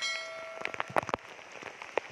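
Rain falling on a river's surface, with irregular sharp ticks of drops striking close by. A short ringing tone sounds at the very start and fades within about half a second.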